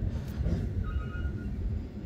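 Low, irregular outdoor background rumble, with a brief faint high tone about a second in.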